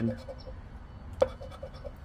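Metal poker-chip scratcher coin rubbing the coating off a scratch-off lottery ticket: a faint scraping, with one sharp click about a second in.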